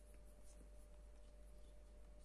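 Very quiet hand sounds close to the microphone: faint soft swishes and light finger ticks, over a faint steady electrical hum.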